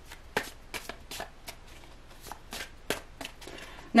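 A deck of tarot cards being shuffled in the hands: a run of short, irregular card flicks and snaps, roughly three a second.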